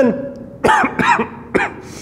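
A man coughing several times in a short run.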